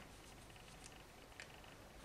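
Near silence: faint room tone with a couple of very faint clicks.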